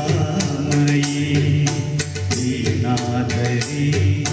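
A male voice singing a Malayalam song through a microphone, holding long notes over a music accompaniment with a steady percussion beat.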